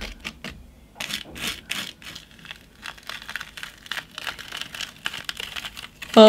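Irregular soft taps and scrapes of a small applicator dabbing and spreading glitter paste over a plastic stencil laid on card. Near the end the flexible plastic stencil is peeled off the card.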